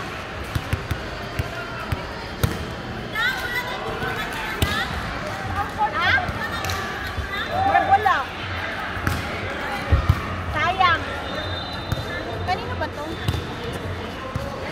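Balls being hit and bouncing on a hard court floor in a large indoor sports hall: a string of sharp, irregular knocks, with people's voices and a few short high squeaks.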